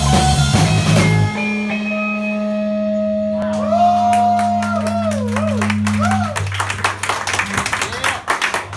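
A live rock band with drums and electric guitar ends a song: the full band stops about a second in, leaving a held low chord ringing with a wavering, bending guitar tone above it. Scattered clapping starts after about six seconds.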